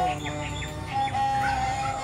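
Serja, the Bodo bowed folk fiddle, playing a slow melody: a held note slides down to lower notes, then a long note is held steadily from about a second in.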